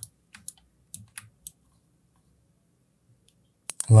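About half a dozen sharp clicks from a computer mouse and its scroll wheel in the first second and a half, then quiet until a couple more clicks near the end.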